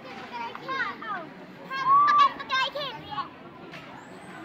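Young children's high-pitched voices calling out and squealing at play, loudest in one long squeal about two seconds in.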